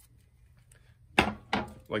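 A sharp knock just after a second in, then a softer one, as a graphite tennis racket is handled and knocks against something hard.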